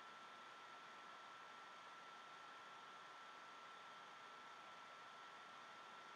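Near silence: a faint, steady hiss with a thin, steady high whine.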